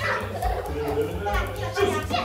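Young children's voices and excited calls during a lively classroom game, over background music with a steady bass line.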